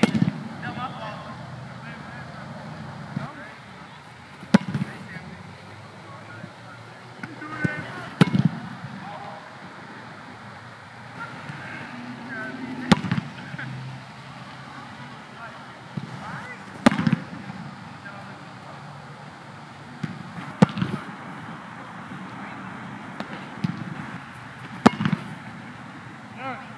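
A goalkeeper kicks and volleys a football hard, one ball after another, each strike a sharp thump. The kicks come about every four seconds, seven in all, over a steady low background hum.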